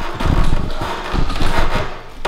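Plastic wrapping crinkling and packaging being handled, with uneven low knocks and bumps as a bike part is worked out of the box.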